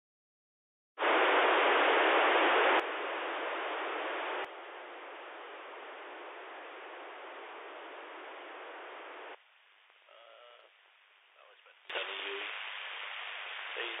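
Receiver hiss from an RTL-SDR dongle's audio output on the 2 m ham band. It cuts in loudly about a second in, steps down in level twice, nearly drops away about 9 s in, then returns near the end with a voice coming through the noise.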